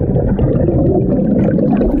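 Churning water and rushing air bubbles from scuba divers entering the water, heard through a submerged camera: a loud, dense, muffled rush with little high end.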